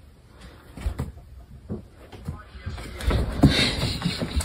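A few light knocks and taps, then a person's voice over the last second.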